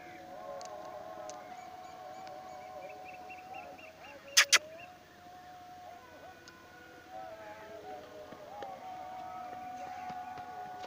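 A steady whistle-like tone that wavers slightly in pitch, broken about four and a half seconds in by two sharp clicks a split second apart, the loudest sounds here; a short run of quick high chirps comes just before the clicks.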